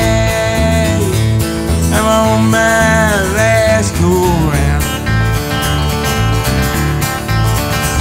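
A country song with acoustic guitar, playing a melodic passage between sung lines over a steady beat.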